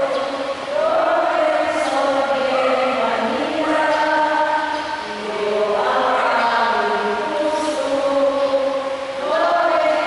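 A group of voices singing a hymn in slow phrases of long held notes, with short breaks about halfway through and near the end.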